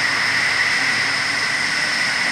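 Steady rushing noise with two constant high-pitched tones and no voices: air and ride noise picked up by the onboard camera of a swinging SlingShot reverse-bungee capsule.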